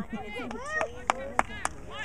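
Three sharp smacks in quick succession, about a quarter second apart, a little past halfway through, over the voices of spectators on the sideline.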